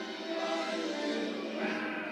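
Musical film soundtrack: orchestral music with sustained, choir-like singing voices.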